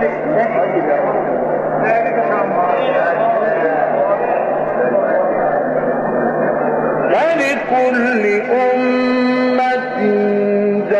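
A crowd of listeners calling out together in acclaim. About seven seconds in, a man's voice begins a melismatic mujawwad Quran recitation with long held, ornamented notes.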